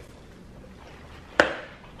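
A single sharp knock about one and a half seconds in, against quiet room tone.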